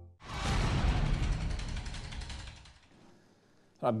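Broadcast transition sound effect: a sudden whoosh of noise that fades out over about two and a half seconds, accompanying a graphic wipe. A man's voice starts near the end.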